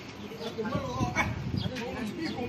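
Indistinct people's voices.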